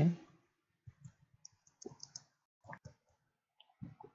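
Typing on a computer keyboard: irregular, separate keystroke clicks, with a quick run of them about one and a half to two seconds in.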